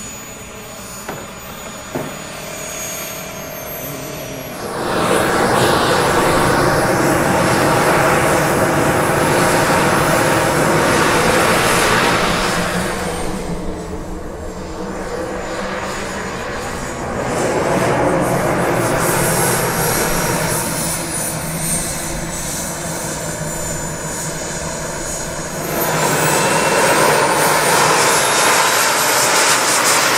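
Turbine engine of a 20 kg radio-controlled Hawker Hunter Mk 58 scale jet running with a high whine, louder from about five seconds in. Near the end the whine rises in pitch and the engine grows louder as it throttles up for the takeoff roll.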